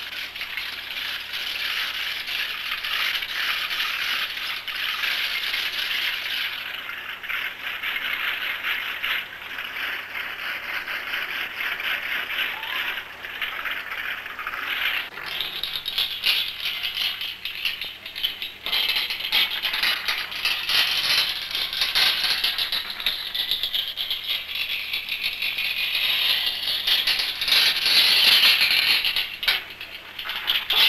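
Continuous dense rattling, like shakers, running throughout. It changes texture about halfway through and is loudest near the end.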